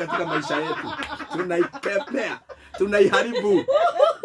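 A man and two women laughing together, with a short lull about two and a half seconds in.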